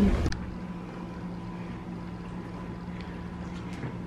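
Steady low electrical hum, with two faint ticks near the end. A brief louder noise at the very start cuts off abruptly.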